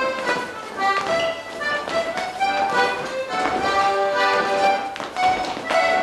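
Accordion playing a lively morris dance tune, with sharp taps and knocks in time with it.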